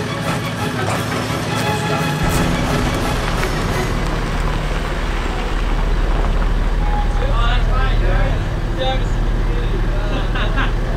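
Background music for the first few seconds, then a vehicle engine running with a steady low hum as an SUV pulls up and idles, with voices talking over it in the second half.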